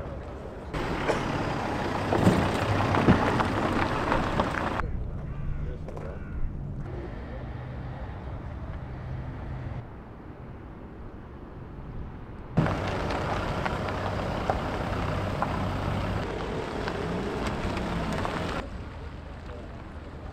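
Car engines running at low speed in a car park, with people talking in the background. The sound cuts abruptly several times between short takes.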